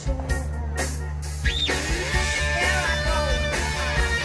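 Live rock band playing: electric guitars over bass guitar and drum kit. A quick rising-and-falling glide comes about a second and a half in, after which the band plays fuller.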